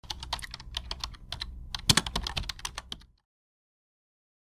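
Computer keyboard typing sound effect: a rapid, irregular run of key clicks that stops suddenly about three seconds in.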